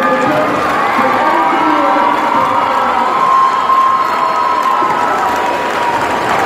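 A crowd of students cheering and shouting from the bleachers, with long drawn-out yells over a steady din of voices.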